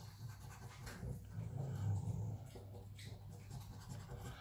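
Faint scratching of a coin rubbing the silver coating off a scratchcard, in short uneven strokes.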